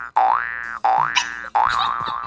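Cartoon 'boing' sound effect played three times in quick succession, each a quick upward twang, the last one held longer.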